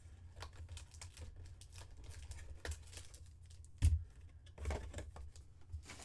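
Handling of a cardboard trading-card hobby box and its foil-wrapped pack: a string of light clicks and rustles as the box lid is opened and the pack taken out, with one louder knock about four seconds in.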